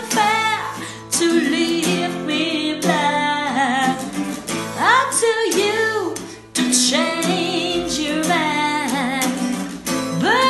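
A woman singing a soft, slow ballad over a Taylor acoustic guitar, the guitar strummed and plucked. She holds long notes that bend and waver, with no clear words.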